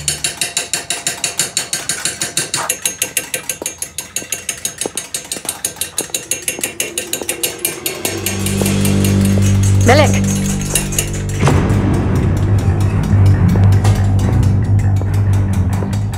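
Fast, even metal tapping of hand tools on copper, about four or five taps a second, for roughly the first half. Then low, sustained background music.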